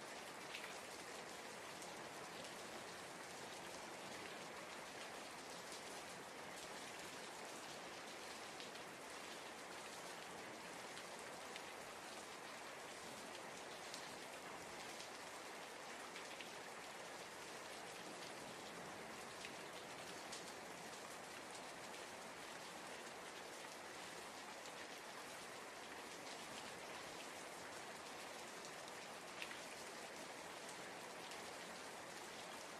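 Steady rain falling, an even hiss with a few faint drop ticks scattered through it.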